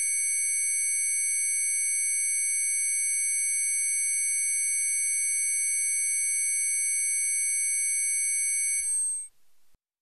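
A dense cluster of steady, high-pitched electronic sine tones from an experimental noise track, held unchanged like a sustained beep. It stops about nine seconds in.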